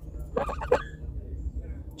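Domestic goose giving a short call of a few quick, low notes about half a second in.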